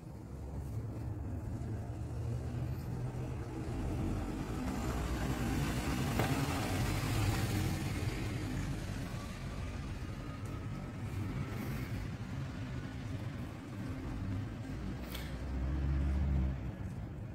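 A motor vehicle going past on the street, its sound swelling to a peak in the middle and fading away, over a steady low rumble.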